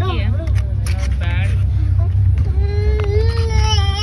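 A small child whining in one long drawn-out cry starting about two and a half seconds in, with short high-pitched vocal sounds before it. Under it runs the steady low rumble of a moving train carriage.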